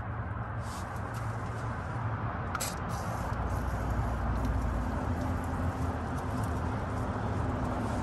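Steady outdoor background noise with a low hum, growing slightly louder, and a faint click about two and a half seconds in.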